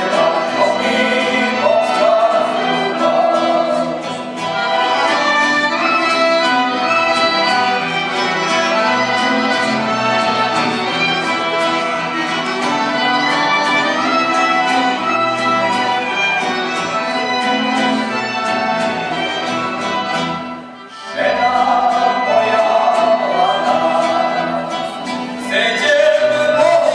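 A man singing live into a microphone, accompanied by violin and electric keyboard. The music drops away briefly about 21 seconds in, then the voice comes back in with the accompaniment.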